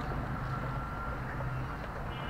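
Steady low outdoor rumble, like distant traffic, with a faint thin whine partway through.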